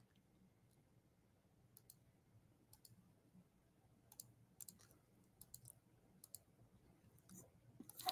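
Near silence broken by a dozen or so faint, scattered clicks from a computer being operated, some coming in quick pairs.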